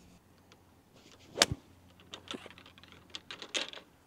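A golf pitching wedge striking the ball: one sharp, crisp click about a second and a half in. A few fainter clicks and rustles follow.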